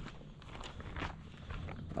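Faint, scattered footsteps scuffing on a gravel and dirt yard, a few light steps and shuffles.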